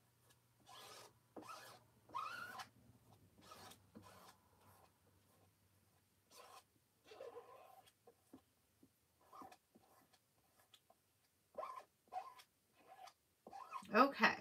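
A small plastic squeegee scraped in short strokes over a silkscreen stencil, working copper metallic paste through the mesh: a string of faint scrapes, some with brief squeaky bends in pitch, and one louder scrape at the very end.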